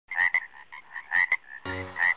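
Frog calls: short high chirps repeating, with a few sharp clicks, then a low buzzing croak starting about one and a half seconds in.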